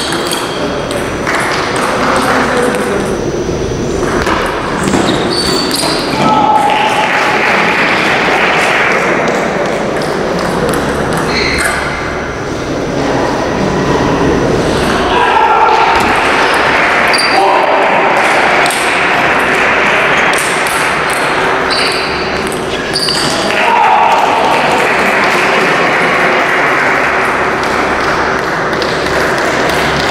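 Table tennis rallies: the ball clicking off the paddles and bouncing on the table, heard in a large echoing hall over a steady background of voices.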